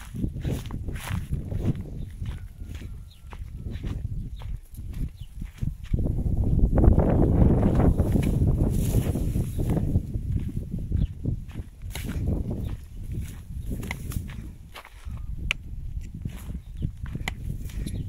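Footsteps crunching through dry grass with wind rumbling on the microphone. The rumble swells loudest from about six to ten seconds in.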